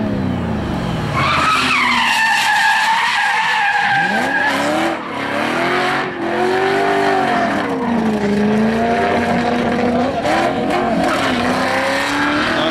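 Drift car engines revving hard, pitch rising and falling as the throttle is worked through the slides, with tyre squeal and skidding as the rear wheels spin and slide sideways.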